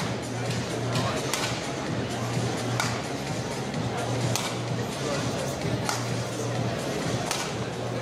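Badminton rally: sharp racket strikes on a shuttlecock, about one every second and a half, over the steady murmur of an arena crowd.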